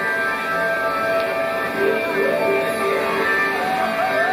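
Drum and bass DJ set playing loud over a club sound system: a melodic passage of held notes with a few sliding ones.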